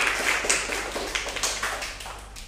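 A small group applauding with many overlapping hand claps, dying away near the end.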